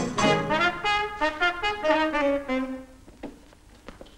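Brass-led music playing a quick phrase of notes that ends about three seconds in, followed by a few faint knocks.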